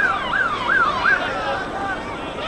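A siren in a fast yelp, rising and falling about three times a second, that dies away a little over a second in.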